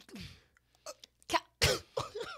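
A man coughing. There is a short sound at the start, a few faint clicks, and then one sharp, loud cough near the end.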